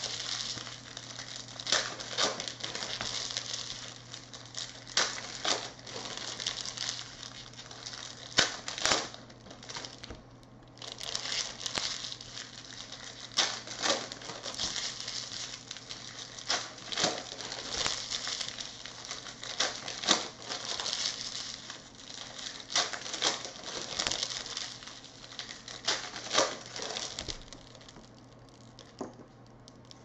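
Foil trading-card pack wrappers crinkling as packs are handled and opened, with cards riffled and tapped on the table: a busy run of sharp crackles and clicks, with a short lull about ten seconds in.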